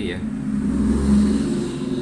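A motor vehicle passing by: a low engine hum that swells to its loudest about a second in, then eases off.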